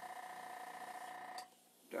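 A steady hum made of several held tones, with a faint click about a second and a half in, after which it cuts out briefly.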